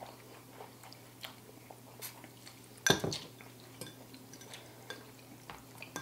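Metal forks clinking against ceramic bowls, with noodles being slurped and chewed, heard as scattered soft clicks and one louder knock about halfway through.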